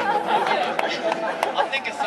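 People talking: voices and chatter in a hall, with a few short sharp clicks.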